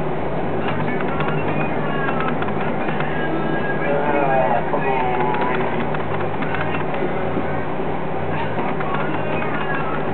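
Potter's wheel running with a steady hum while wet clay is worked by hand on it.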